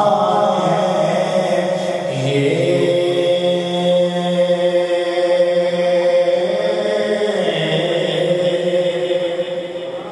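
Unaccompanied male chanting of a devotional naat through the hall's sound system, in long held notes that shift pitch in steps.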